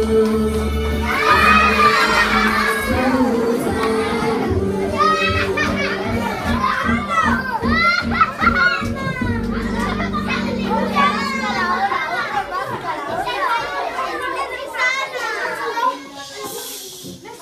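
Many children's voices shouting over music with steady held notes; the music stops about twelve seconds in while the shouting carries on.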